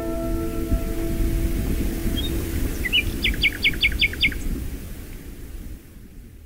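A plucked-string chord rings out and fades over a steady low background rumble. About three seconds in, a small bird gives a quick run of about six short, high, descending chirps.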